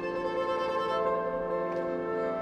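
Contemporary chamber ensemble music of slow, sustained held notes layered into chords; a new held note enters about a second in.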